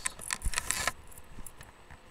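Handling noise: a quick run of jingly clicks and rustles, like keys or small objects being shaken, for about the first second, then it dies away to quiet room noise.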